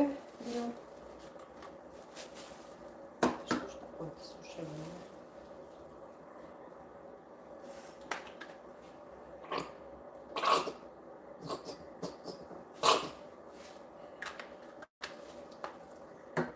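Scattered short clicks and knocks of plastic hair-colour tubes and bottles being handled, squeezed and set down on a countertop beside a plastic mixing bowl, over a steady faint hum.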